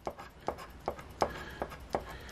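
A coin scraping the scratch-off coating off a lottery ticket in six short strokes, about three a second. The coating is unusually hard and scratches off with difficulty.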